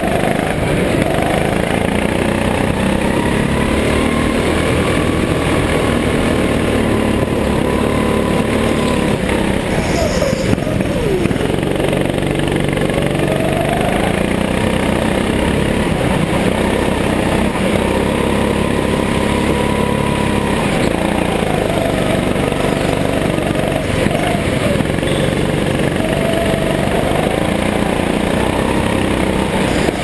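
Go-kart engine heard from onboard at speed, its pitch rising on the straights and falling away into the corners, again and again through the lap.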